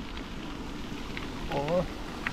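Bicycle tyres rolling over a gravel path: a steady grainy hiss with small ticks. A short vocal sound from the rider comes about one and a half seconds in.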